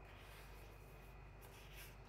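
Near silence: room tone with a faint rustle of paper as a finger slides over a notebook page, a little louder near the end.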